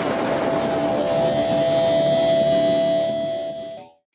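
Logo intro sound effect: a noisy rushing wash with a steady held tone, fading out just before the end.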